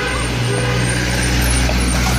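Road traffic, with a large vehicle's engine running close by as a steady low hum.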